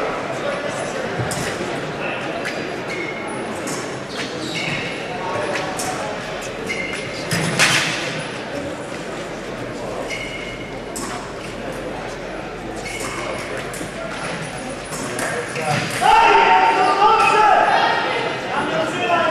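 Fencing footwork on a piste in a large echoing hall: short shoe squeaks and one sharp clack about seven and a half seconds in, over a steady murmur of voices. Near the end comes a louder sustained sound lasting about a second and a half.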